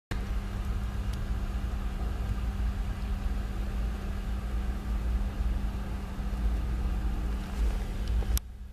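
Steady low rumble of a car interior, with a constant hum underneath.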